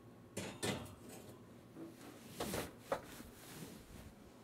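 Enamelled cast-iron skillet set on an oven's wire rack and the rack pushed in: a few metallic clanks and scrapes, with the sharpest knocks near the start and about three seconds in.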